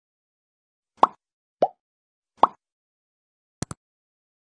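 Three short pitched pops, the sound effects of an on-screen subscribe-button animation, then a quick double click near the end.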